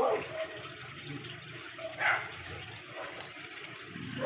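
Steady running-water noise, such as aquarium water or aeration, with a short louder sound about two seconds in.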